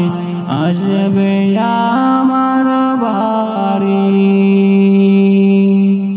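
A man singing a Bengali Islamic gazal (ghazal), sliding and stepping between notes, then holding one long drawn-out note through the second half.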